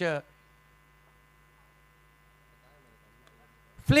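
Faint, steady electrical hum in the broadcast audio, with a commentator's voice trailing off at the start and starting again just before the end.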